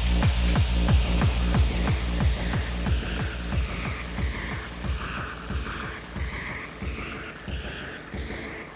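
Hard techno track at about 182 beats per minute: a kick drum hitting about three times a second, each hit sweeping down in pitch, with hi-hat ticks above and swirling synth tones in the middle. The whole mix grows steadily quieter as the track winds down.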